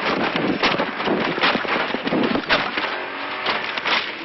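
A rally car crashing, heard from inside its cabin: dense clattering and rattling noise with many knocks and bangs throughout.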